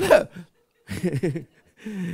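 A man's voice in short, clipped bursts with brief silences between.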